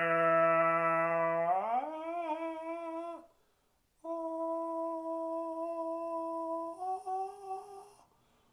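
A person humming long held notes: a low note that slides up about an octave and wavers, a short break, then a steady higher note that steps up slightly near the end.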